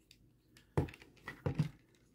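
Plastic parts of a Transformers Studio Series Bonecrusher action figure being handled as its shovel arm is folded back onto the vehicle mode. There are a few short, faint clicks and knocks, about a second in and again about half a second later.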